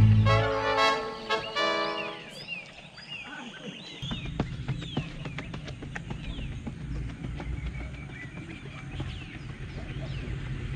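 Latin music ending with a few short repeated chords in the first two seconds. Then birds call outdoors, many short downward-sliding chirps, over a steady low rumble with a few scattered clicks.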